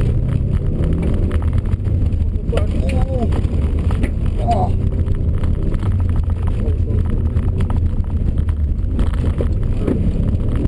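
Subaru Impreza WRX STI's flat-four engine running under load, a steady low drone heard from inside the cabin with road noise, as the car is driven hard on a loose course. A few brief higher-pitched cries or squeals come through around three and four and a half seconds in.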